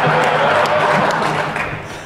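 Audience applause with some laughter, dying away near the end.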